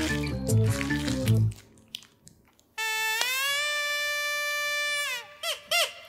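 Background comedy music, then a long held note that glides down at the end, followed by two short bouncing notes like a comic sound effect.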